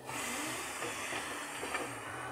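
Air hissing out steadily under pressure, starting suddenly and easing off near the end: a burst of shop compressed air at the wheel hub.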